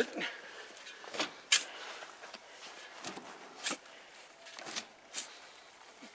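Steel shovel digging into loose soil and tossing it, heard as about half a dozen short, separate scrapes and thuds.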